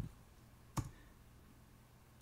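Computer keyboard keystrokes: a click right at the start and one sharper key press about a second in, finishing the typed command 'clear' and pressing Enter, over faint room tone.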